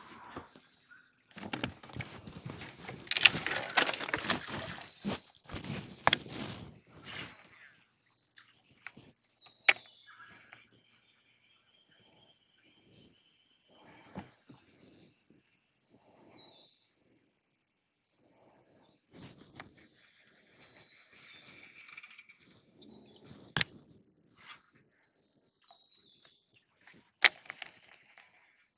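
Birds calling with short, falling whistled notes over a quiet background, with a few sharp clicks scattered through. In the first seconds there is a few seconds of loud rushing noise.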